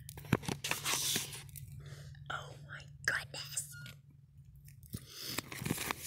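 Close handling noise of packaged blankets being rummaged and shifted on a store shelf: irregular crinkling and rustling with a few sharp clicks, the sharpest about a third of a second in, over a steady low hum.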